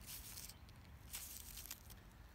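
Faint rustling and scraping of fingers rubbing the underside of a zucchini leaf to scrape off stuck-on squash bug eggs, in a few short bursts.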